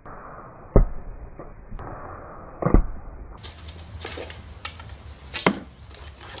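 Arrows shot from a bow striking an archery target, two sharp thuds about two seconds apart. After a cut, a few lighter clicks and then a louder sharp impact of a thrown knife sticking into a wooden target.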